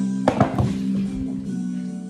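Acoustic guitar music plays throughout. About a third of a second in comes a loud knock and clatter as a wooden picture frame is laid down on a worktable, with a low thump about a second in.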